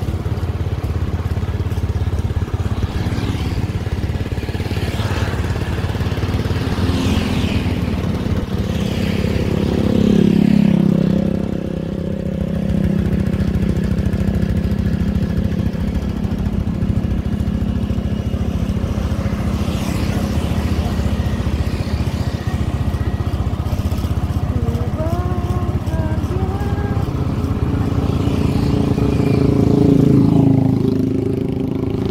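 Small motorcycle engine running steadily on the move, with road noise. Another motorcycle passes about ten seconds in, its pitch dropping as it goes by, and another comes close near the end.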